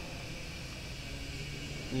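A pause in speech: only a steady low background hum and hiss.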